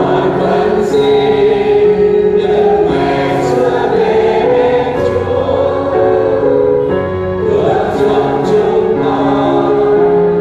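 A choir singing a slow sacred hymn, holding long notes in chords that change about once a second.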